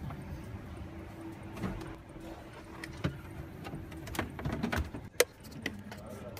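Hands handling wiring and plastic trim parts: scattered light clicks and rustles, with one sharp click a little after five seconds in. A faint steady hum runs under the first four seconds.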